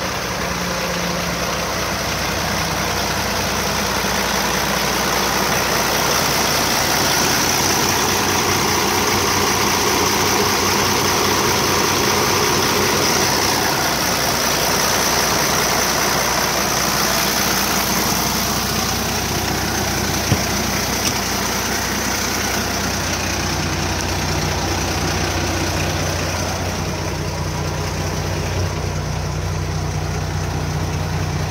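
2007 Sterling dump truck's diesel engine idling steadily with the hood up, a little louder as the microphone passes close to the engine bay. A single short tick sounds about twenty seconds in.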